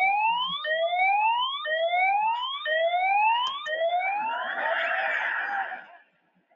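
Cartoon siren sound effect played through a TV speaker: a rising whoop repeated about once a second, five times, then a rougher, noisier wail for the last second or so.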